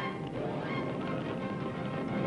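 Dramatic orchestral film score, with loud horn-like notes.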